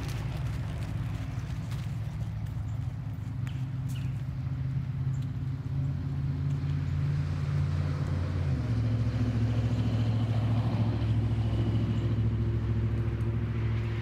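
A motor vehicle engine running steadily: a low, even hum that shifts pitch about eight and a half seconds in.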